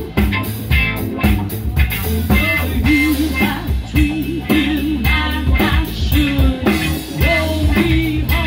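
Live blues band playing: electric guitar and electric bass over a drum kit with a steady beat of cymbal strokes.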